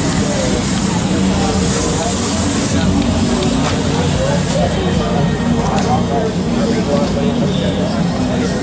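A 1955 Chevrolet pro street hardtop's engine idling steadily through its exhaust, with people's voices talking over it.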